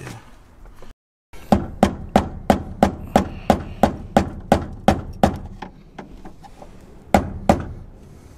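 Rapid sharp taps on a flathead screwdriver set against the fuel-pump locking ring: about a dozen knocks at roughly three a second, then two more near the end. This is the stuck ring being tapped round to loosen it.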